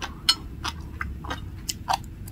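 Sea grapes (green caviar seaweed) giving off a string of sharp clicks and pops up close, about seven in two seconds.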